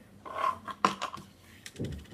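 Handling noise close to the microphone: a short rustle, a sharp click just before the one-second mark with a few small ticks after it, and a dull thump near the end.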